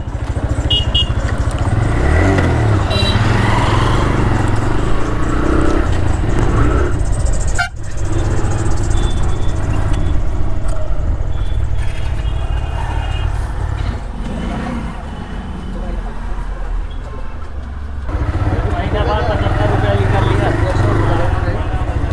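TVS Raider 125's single-cylinder engine running as the motorcycle is ridden at low speed and pulled up, with a brief cut in the sound about eight seconds in. Men's voices come in near the end.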